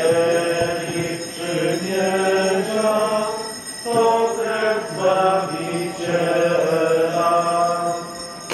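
Voices singing a slow Catholic hymn in unison, with held notes that step up and down, and a short breath-break a little before the middle.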